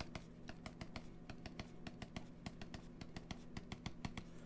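Stylus pen tapping on a graphics tablet as short hatching lines are drawn: a quick, even run of light clicks, about five a second. Underneath is a faint, steady low hum.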